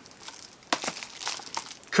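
Crinkling and crackling of plastic shrink-wrap on Blu-ray cases as they are handled, with two sharper clicks a little under a second in.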